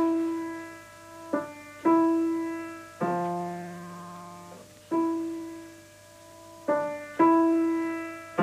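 Grand piano playing a slow progression of sustained chords: about seven chords struck one after another, each left to ring and die away before the next.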